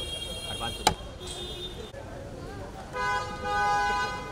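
A car horn honking twice near the end, a steady multi-tone blast. About a second in there is one sharp click.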